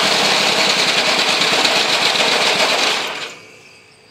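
Homemade three-cylinder engine running on two cylinders with one ignition switched off, a rapid run of firing pulses, then dying away about three seconds in: it does not keep running well on just two cylinders.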